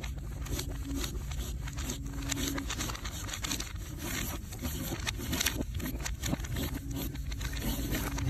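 Hand writing on paper: quick, irregular scratchy strokes of a pen tip across the sheet as lettering is written out.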